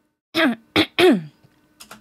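A woman clearing her throat in three short bursts, the last one falling in pitch.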